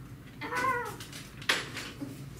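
A short high-pitched cry, bending in pitch like a meow, about half a second in, followed a second later by one sharp knock.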